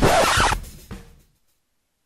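The closing sting of a station promo jingle: a brief, loud, noisy swish that fades out within about a second. Dead silence follows.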